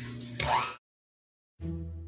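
Electric hand mixer starting up in a bowl of butter and sugar, a steady hum that rises briefly, then cut off abruptly to dead silence. Instrumental music starts near the end with held notes struck at an even pace.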